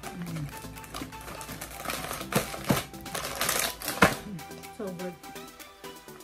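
Plastic cookie wrapper of an Oreo pack crinkling and crackling for about two seconds in the middle, with a couple of sharp clicks, the loudest near the end of it, as a cookie is pulled out. Background music plays throughout.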